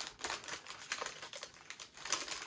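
Small plastic bags of diamond-painting drills shuffled inside a larger plastic bag: a quiet, irregular run of crinkling rustles and small clicks.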